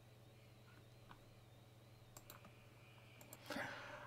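Near silence with a steady low hum and a few faint clicks of a computer mouse while the page is scrolled, two of them close together just past two seconds. A soft hiss comes in near the end.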